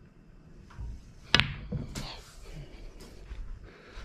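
Leather cue tip striking the cue ball low for a stun screw (backspin) shot on a pool table: a sharp click about a second in, then a second click about half a second later as the cue ball meets the object ball, and a fainter knock near the end.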